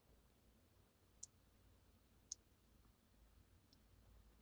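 Near silence, with three faint, brief high clicks spread through it.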